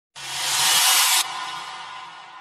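An edited-in whoosh sound effect: a loud hiss that swells for about a second, cuts off sharply, and leaves a slowly fading echo tail.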